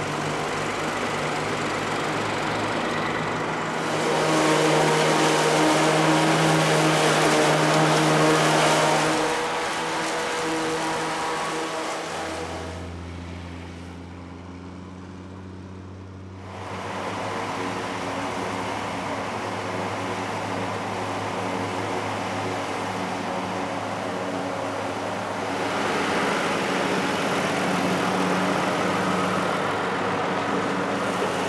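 Old Schlüter tractor diesel engines running under load as they drive forage harvesters chopping maize. The sound is louder for a few seconds near the start, drops to a quieter, deeper hum in the middle, and rises again near the end.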